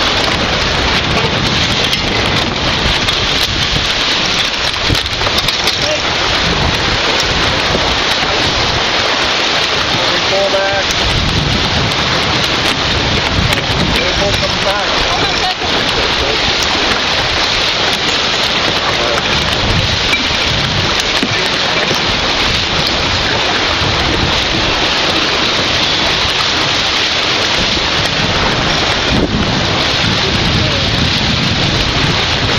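Wind rushing over the microphone and water along the hull of a T-10 racing sailboat under way: a steady, loud rush of noise with uneven low rumbling from gusts on the microphone.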